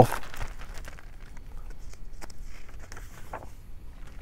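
Faint handling of a hardcover picture book: scattered small taps and a light paper rustle as the book is shaken and a page is turned.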